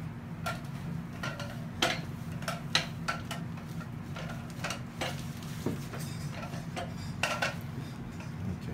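Irregular light clicks and clinks from handling the plastic-sheathed ultrasound probe and instruments, about ten over several seconds, over a steady low hum of medical equipment.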